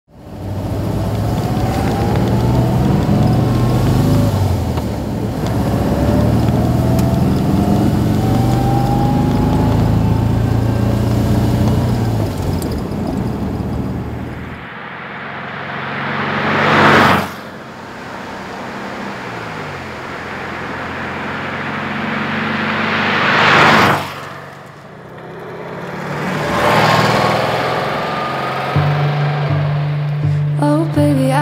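Porsche 356 Pre A's air-cooled flat-four engine running and accelerating through the gears, its pitch climbing again and again. In the second half the car drives past twice, each pass loudest just as it goes by, and approaches a third time near the end.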